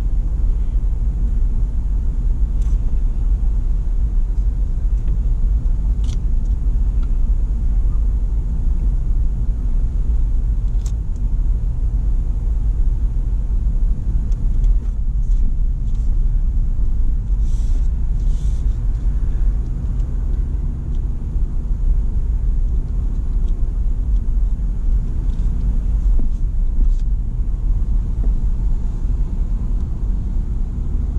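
Steady low rumble of a car being driven, engine and road noise heard from inside the cabin.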